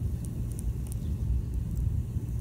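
Uneven low rumble of wind buffeting the microphone, with a few faint, short high ticks.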